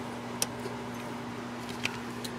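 Steady low electrical hum from bench radio equipment, with two faint brief clicks, one about half a second in and one near the end.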